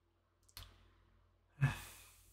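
A man's short sigh, a breathy exhale starting with a brief voiced onset and fading as a hiss, about one and a half seconds in. A faint click comes about half a second in.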